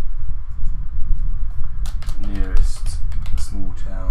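Computer keyboard typing: a quick run of keystrokes as a word is typed in.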